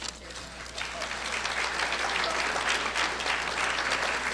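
Audience applause: many hands clapping, swelling about a second in and then holding steady.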